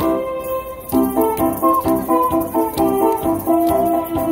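Ocarina playing a melody of clear, pure notes over a recorded keyboard accompaniment with a steady beat. The accompaniment thins out for about the first second, then comes back in.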